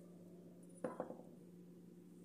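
Two quick light knocks from hands handling things close to the microphone, a split second apart about a second in, over a faint steady hum.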